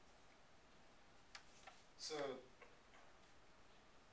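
Near silence: room tone, with a few faint clicks in the middle and a single short spoken word about two seconds in.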